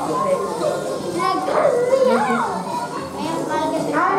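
Children's voices talking and calling out over one another, with other voices mixed in.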